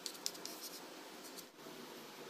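Kitchen knife sawing down through a stack of soft white bread slices: a faint, scratchy rasp of the blade through crumb and crust, with a few light ticks in the first half second.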